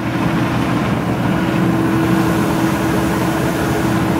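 Cincinnati mechanical plate shear idling with its flywheel turning and not cutting: a steady, even hum with one constant tone. The machine runs quietly, a sign it is in good order.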